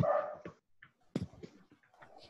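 A dog barking twice, about a second apart, the first bark the louder.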